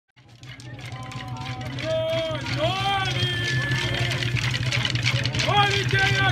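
Maculelê music fading in from silence: voices singing over a steady low drumming from atabaque drums, with a constant clatter of sharp strikes.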